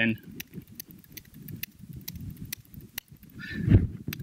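Laptop keyboard keystrokes: a steady run of light clicks, about four or five a second, over a low room rumble. A man's voice comes back in near the end.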